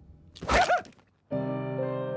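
A short cartoon laugh or grunt with a dull thunk about half a second in, then a soft sustained keyboard chord of background music starts after about a second.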